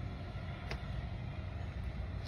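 Steady low background rumble with a faint click about two-thirds of a second in.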